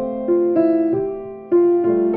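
Solo grand piano playing: melody notes struck one after another, roughly every half second, over a held lower note, with the strongest strike about one and a half seconds in.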